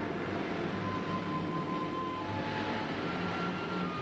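A 1950s taxicab driving: steady engine and road noise.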